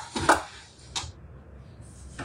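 Kitchen items being handled on the counter: two quick knocks about a quarter second in, then a single lighter click about a second in.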